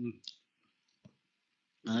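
A man's talk pausing over an internet voice-chat line: a short syllable at the start, a single faint click about a second in, and talking again near the end. The gaps drop to dead silence.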